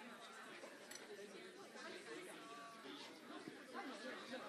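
Faint background chatter: several people talking at once in a large room, with no single voice standing out.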